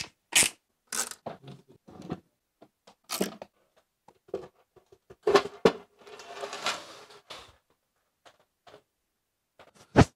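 Sharp clicks and knocks of scooter parts being handled during disassembly, with a scraping rustle from about six to seven and a half seconds as a deck cover is worked loose.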